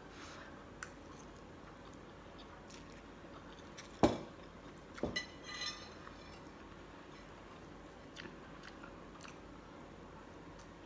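A person eating spicy instant noodles: a sharp, loud smack about four seconds in, then a short slurp of noodles about a second later, with faint chewing and small clicks around it.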